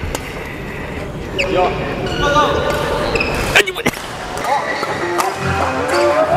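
Background music with voices and court noise, and a few sharp smacks of badminton rackets hitting shuttlecocks, the loudest a quick cluster a little past halfway.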